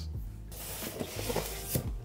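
Polystyrene foam packing layer scraping and rubbing against the cardboard box as it is lifted out, a hissing scrape for about a second and a half.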